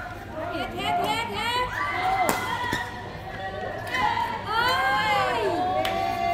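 Badminton play: athletic shoes squeaking on the rubber court mat in short, bending chirps, with a few sharp racket strikes on the shuttlecock.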